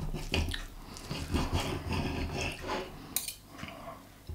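A fork clinking and scraping on a plate while eating, in small irregular taps, with one sharper clink about three seconds in.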